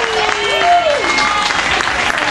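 Audience applauding, with a voice calling out about half a second in.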